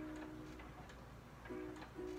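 Soft background music, a plucked-string tune. A held note fades away over the first second, then plucked notes start again about one and a half seconds in.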